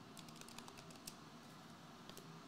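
Faint, scattered light clicks and taps from hands handling trading cards on a tabletop.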